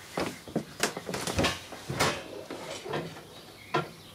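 Irregular knocks and clicks of something being handled, with a dull thump about a second and a half in and a sharp click near the end.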